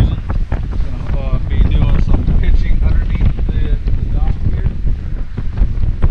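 Strong wind buffeting the microphone: a loud, gusty low rumble.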